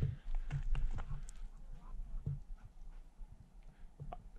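Irregular scuffs and clicks of footsteps on loose talus rock, with a low wind rumble on the microphone.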